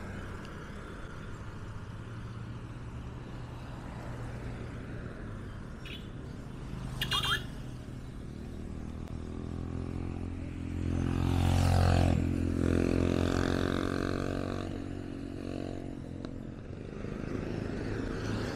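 Steady hum of road traffic on a city main road. A vehicle engine passes close, building from about ten seconds in, loudest around twelve seconds and then fading. A short high sound comes about seven seconds in.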